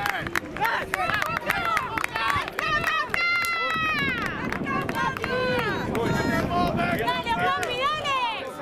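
Several people shouting and calling out over one another, with one long held shout about three seconds in that drops in pitch as it ends.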